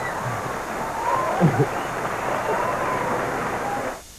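Live studio audience applauding, with a few cheering voices over the applause; it cuts off suddenly at the very end.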